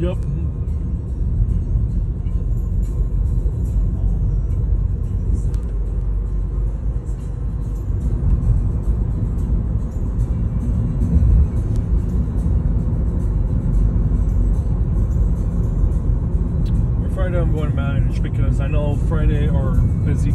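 Steady low rumble of a car driving, heard from inside the cabin, with a voice coming in near the end.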